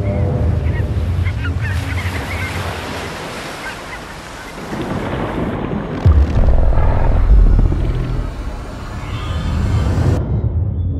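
Ocean surf and wind, as a sound effect, with a sudden deep boom about six seconds in.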